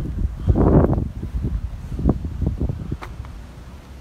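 Wind buffeting a phone's microphone in uneven gusts, loudest about a second in, with one short click near the end.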